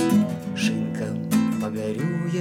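Classical guitar strummed in a steady rhythm between sung lines, a few sharp strum strokes over ringing chords.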